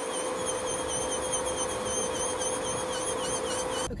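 Nail salon equipment running steadily: a fan-like whoosh from a nail dust-collector table, with a steady hum and a high, wavering whine. It stops abruptly near the end.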